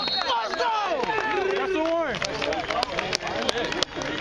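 Several people yelling and cheering at once, celebrating a touchdown, their voices overlapping. A few sharp clicks come in the second half.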